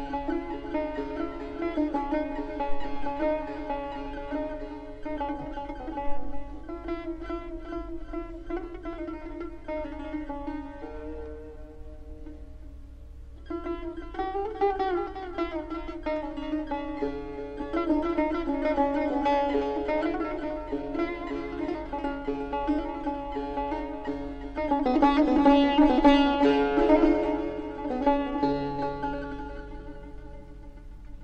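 Solo Persian plucked lute playing Persian classical music in dastgah Shur, with rapid repeated notes. It drops quieter about eleven seconds in, picks up again two seconds later, and is loudest a few seconds before the end.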